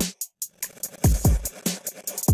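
Electronic beat played by the iZotope BreakTweaker drum machine: deep kicks that drop in pitch, mixed with short, sharp hits in a glitchy pattern.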